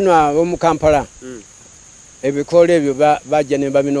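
A steady, high-pitched insect chirring, like crickets, under a person's voice. The voice talks for about the first second, pauses, then starts again a little after two seconds in.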